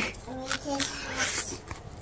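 Soft mouth clicks and chewing close to the microphone as a slice of pizza is eaten, with faint speech in the first second.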